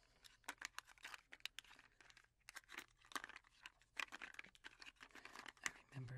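Small cardboard Milk Duds candy box handled in the fingers, giving quiet, irregular scratchy clicks and crinkles.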